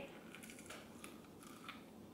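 Faint crunching and chewing of a bite of air-fried tempura shrimp: a few soft, scattered crackles.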